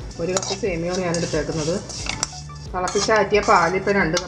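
A few sharp clinks of a utensil against a metal cooking pan, over background music with a wavering melody.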